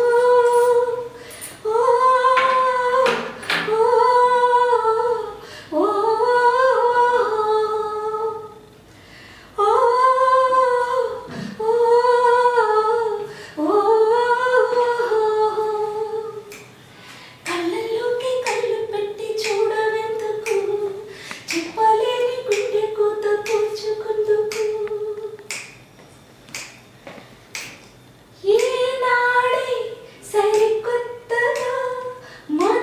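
A woman singing unaccompanied, in held phrases of a second or two with short breaks between them, with sharp finger snaps keeping time, heard in a small room.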